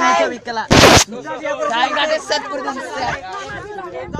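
Several people talking over one another, with one short, loud burst of noise just under a second in.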